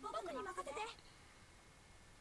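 A high-pitched voice says one short line in Japanese, played back quietly from the anime episode, for about the first second; then near silence.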